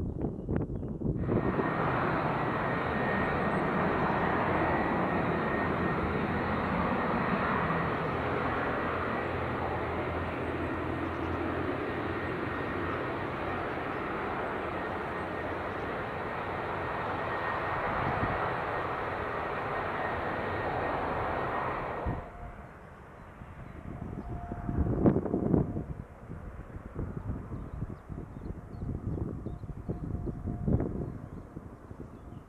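Twin-engine jet airliner's engines at takeoff power during the takeoff roll: a steady, loud rush of jet noise with a high whine through it, starting suddenly just after the start and cutting off abruptly about two-thirds of the way through. After that, a quieter stretch with gusts of wind on the microphone.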